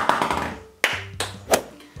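A sharp noisy hit that dies away, then three short sharp taps about a third of a second apart, over faint background music.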